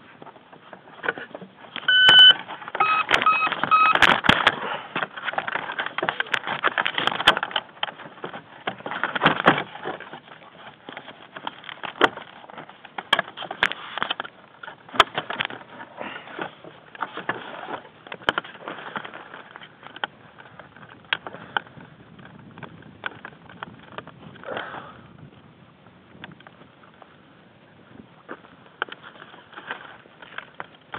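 A short electronic beep about two seconds in, then three more quick beeps, just after the RC plane's flight battery is plugged in. Around them run rustling and handling noise with scattered clicks, as the camera-carrying plane is moved about.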